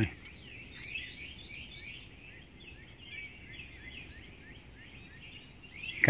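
Birds chirping just before daylight: many short, falling notes, several a second, over a faint low background hum.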